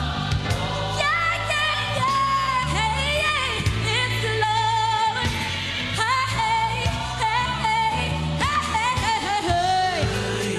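Gospel singing with a live band: a lead voice sliding through pitch runs over sustained bass notes.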